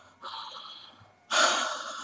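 A young man's heavy, strained breaths through an open mouth: two long hissing breaths, the second, a little over a second in, louder than the first.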